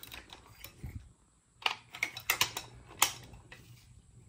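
Long hand ratchet with a 5/8-inch spark plug socket, clicking as it is worked to break spark plugs loose: a few sharp, uneven clicks, most of them in the second half.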